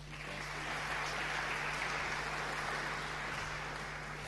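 Audience applauding, building up over the first second and fading out near the end.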